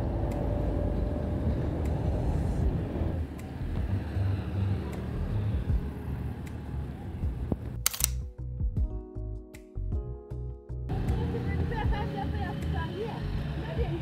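Background music with a single loud camera-shutter click about eight seconds in. After the click the music thins to sparse held notes, and outdoor street sound with a voice comes back for the last few seconds.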